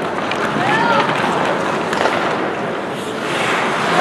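Ice hockey game sound in an indoor rink: a steady wash of play and crowd noise, with indistinct shouting voices rising and falling about a second in and a few sharp clicks.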